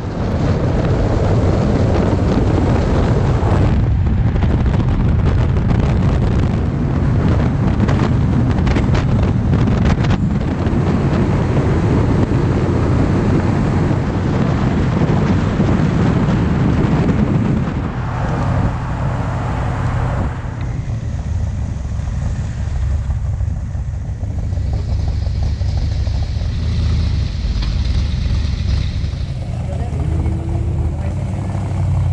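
Steady low rumble of road and wind noise from an open Cobra-style roadster driving at motorway speed. It eases a little about two-thirds of the way through.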